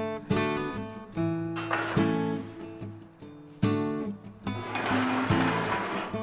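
Background music: strummed acoustic guitar, with chords struck every second or so and left to ring and fade.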